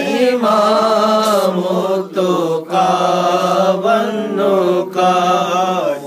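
A man singing a naat (devotional praise of the Prophet) unaccompanied, drawing out long wavering notes, with short pauses between phrases.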